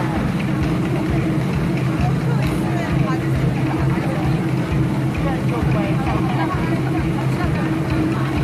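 Voices in a theatre audience, several talking at once, over a loud steady low hum.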